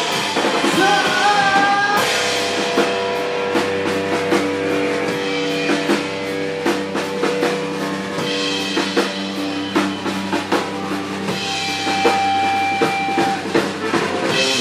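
Live post-hardcore band playing: electric guitars and a drum kit, with sung vocals in the first couple of seconds. After that the guitars hold long sustained notes over steady drum hits.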